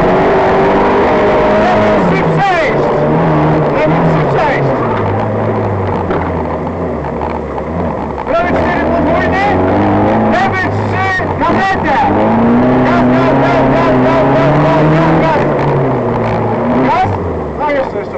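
Fiat 126p rally car's air-cooled two-cylinder engine heard from inside the car under hard driving on a gravel stage, its revs rising and falling with gear changes. Short knocks and clatter from the loose surface come through around the middle. The engine eases off near the end as the car slows.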